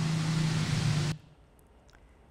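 Steady hiss with a low hum, the room noise of an office interview recording. It cuts off abruptly about a second in and gives way to near silence.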